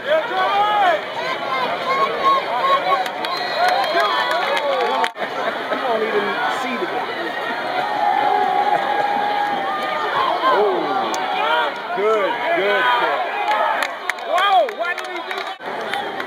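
Football crowd and sideline of many voices shouting and cheering at once, cut off abruptly about five seconds in and again just before the end as one clip gives way to the next.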